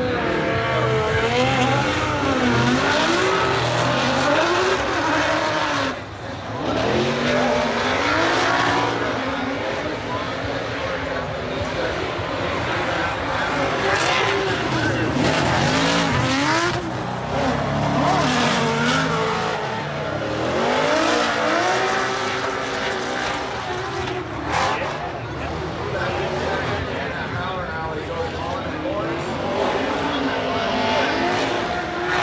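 Pro drift cars, among them a V8 Ford Mustang RTR, running a tandem drift with their engines revving up and down over and over as they slide, over a haze of spinning-tyre noise.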